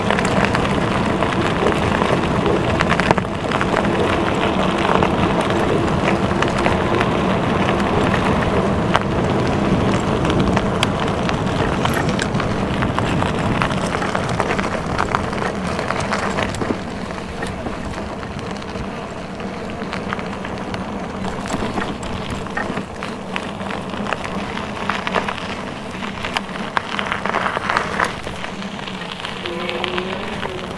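Lectric XP Lite e-bike ridden over a dirt and gravel track: tyres crunching over the grit and wind buffeting the helmet-mounted camera's microphone, steady and a little quieter in the second half.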